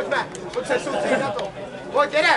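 Several voices talking and calling out at once, overlapping chatter with no clear words, broken by a few brief sharp clicks.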